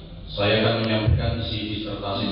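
A man reciting a prayer in a chanting, intoning voice, starting about half a second in after a brief pause.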